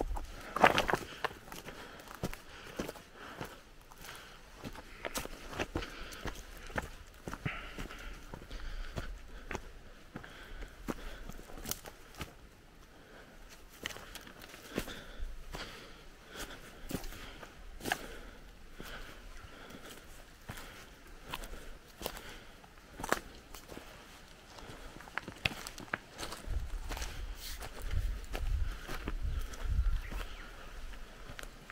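Footsteps on a forest trail of leaf litter, twigs and stones, an uneven run of sharp steps over a faint steady hiss. A low rumble comes in near the end.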